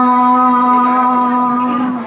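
A woman singing one long, steady held note of a kirtan through a microphone and loudspeaker. No drums play under it, and the note stops at the very end.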